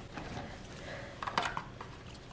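Faint handling sounds of bars of soap and white paperboard boxes being moved on a paper-covered table: soft rustling with a few small clicks a little past halfway.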